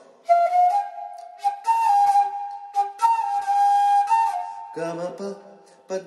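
Bamboo transverse flute playing a slow melody in three phrases of held, gliding notes with an airy, breathy tone. Near the end a man's voice sings the note names "pa pa".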